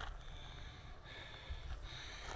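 Quiet outdoor background: a steady low rumble with a faint, steady high tone above it.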